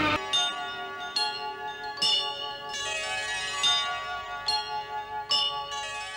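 A slow melody of bell-like chimes, about seven struck notes roughly a second apart, each ringing on and overlapping the next.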